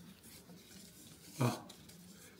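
A man's short wordless vocal sound, a brief hum-like murmur about one and a half seconds in, with faint rustling of a paper napkin.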